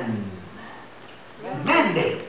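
A man's drawn-out, half-sung preaching voice: a long phrase slides down in pitch and fades in the first half second, a pause of about a second follows, and a new phrase begins near the end.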